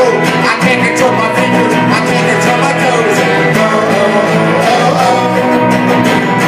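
Live band of acoustic and electric guitars strumming a punk-rock song, played as a small-band cover.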